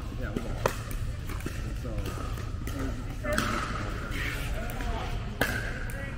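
A few sharp pops of pickleball paddles hitting a plastic ball, echoing in a large hall, the clearest about a second in and another near the end, over men's voices talking.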